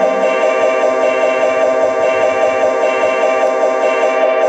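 Live music: a dense chord of many tones held steadily, with no beat.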